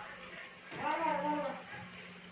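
A short wavering vocal call about a second in, over a steady low hum.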